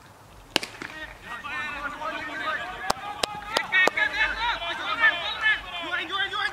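A cricket bat strikes the ball with a single sharp crack about half a second in, followed by several voices shouting and calling on the field. Four quick sharp knocks come close together in the middle.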